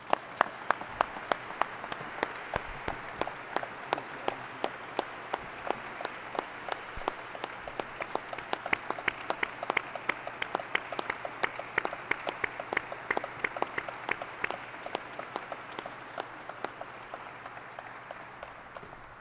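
Audience applauding, with many sharp single claps standing out over the crowd's clapping. The applause thins out near the end.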